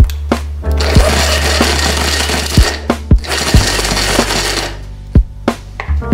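Electric hand blender with a mini-chopper attachment running to mince raw chicken breast coarsely, in two runs of about two seconds each with a short stop between, starting about a second in. Background music with light percussion plays underneath.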